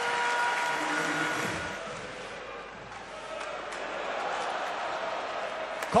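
Ice hockey arena crowd noise: a steady din of the spectators that dies down in the middle and swells again near the end.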